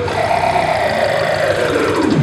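Circuit-bent children's groovebox toy playing its electronic sound, with its pitch set by a kiwi fruit wired in as a variable resistor. The tone slides slowly and steadily down in pitch over a low pulsing loop.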